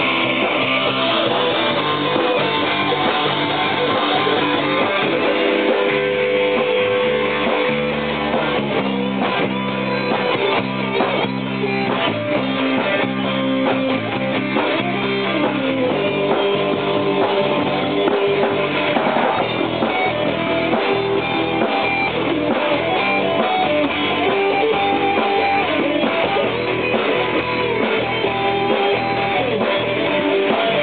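Electric guitar played live, with continuous music and changing notes throughout.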